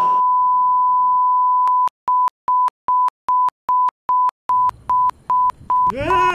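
Colour-bar test tone: a single steady, high-pitched tone held for about two seconds, then broken into a run of short, even beeps, about two and a half a second.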